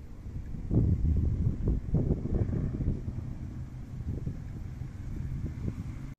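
Wind buffeting a phone microphone: an uneven low rumble in gusts, strongest for a couple of seconds near the start and then easing.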